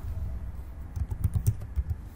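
Typing on a computer keyboard: a quick run of several keystrokes in the second half.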